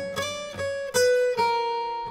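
Acoustic guitar played alone between sung lines: a few plucked notes, each ringing on after it is struck.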